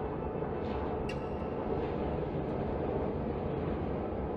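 A steady low rumbling background noise with a faint click about a second in.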